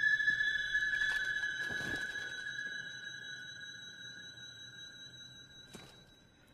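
A steady, high electronic tone from the film's soundtrack, with fainter higher overtones, fading slowly away almost to silence near the end. Faint soft rushes of noise come about one and two seconds in.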